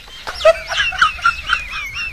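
A chicken clucking: a quick run of short calls, about four a second, going into a higher wavering call near the end.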